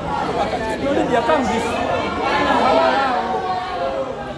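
Several people's voices talking and calling out over one another, loud and close, with no music.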